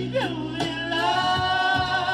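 A vinyl 45 rpm single playing a song: a singer's voice slides into one long held note with a slight vibrato about halfway through, over a steady bass and backing band.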